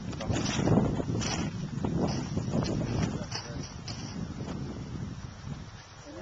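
Wind buffeting the camcorder's microphone in uneven gusts, stronger in the first few seconds and easing off toward the end.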